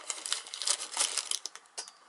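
Tissue paper wrapping crinkling and rustling in quick crackles as it is pulled open by hand, dying away near the end.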